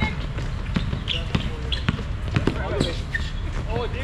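Basketball bouncing on a hard outdoor court in irregular dribbles, with players' shouts from across the court near the end.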